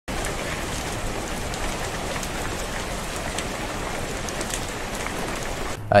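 Steady splashing of a small waterfall pouring onto rocks, which cuts off suddenly near the end.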